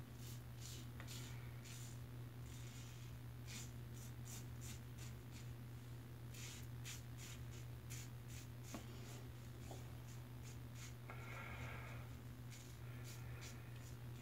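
Fine Accoutrements World's Finest Razor, a double-edge safety razor, scraping through lathered four-day stubble in many short, scratchy strokes that come in quick runs. A steady low hum runs underneath.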